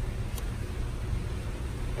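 Steady low background rumble with a faint click about half a second in.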